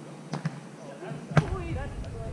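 Two faint taps, then about a second later one sharp, loud smack of a volleyball being struck, followed by players' voices calling out.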